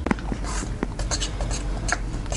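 A metal spoon scraping and clinking against a glass bowl of melted chocolate: a run of irregular light clicks and short scrapes.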